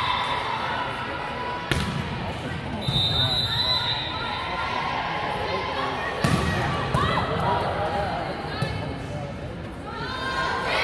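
Volleyball rally in a gym hall: a few sharp smacks of hands striking the ball, the loudest about six seconds in, over steady spectator voices and shouting.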